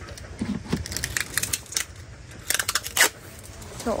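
Red plastic basins and a plastic lid being handled and stacked: irregular light clicks, knocks and crinkles of plastic, with a couple of sharper clicks late on.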